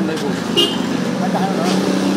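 Street noise: a steady low hum of traffic or a running engine, with snatches of nearby voices and a short high-pitched sound about half a second in.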